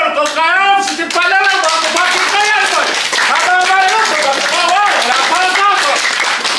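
A man's raised voice speaking in Samoan, with some syllables drawn out, and hand claps scattered through it.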